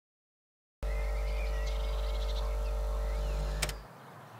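A steady low drone with a faint sustained hum above it starts just under a second in. A single sharp click comes near the end, and the drone dies away just before the end.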